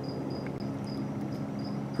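Insect chirping in short, high pulses at one pitch, about four a second, over a faint low steady hum.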